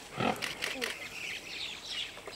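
A greater one-horned rhinoceros gives one short, loud call that falls steeply in pitch just after the start, followed by a few quick sharp noises; birds call faintly behind it.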